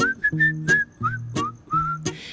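A man whistling a melody of short notes, several sliding up into their pitch, over a plucked acoustic guitar played in a steady rhythm.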